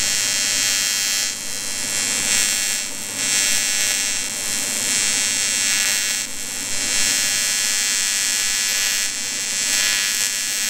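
Lincoln Square Wave TIG 200 AC TIG arc buzzing steadily on an aluminum boat hull, building up filler metal over a crack. The buzz drops briefly a few times as the arc is eased off and brought back.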